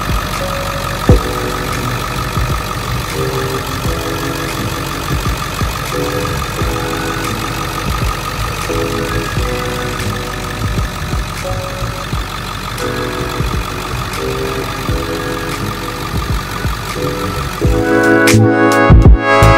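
Ford 7.3-litre Power Stroke turbo-diesel V8 idling steadily.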